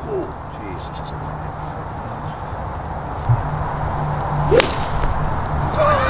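A golf club swishes through a full swing and strikes the ball with one sharp crack about four and a half seconds in, over a steady background hiss.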